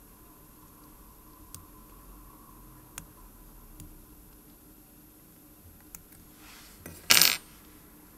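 Steel tweezers working on a watch movement to release the winding stem: a few faint small clicks, then one loud, short metallic clatter about seven seconds in.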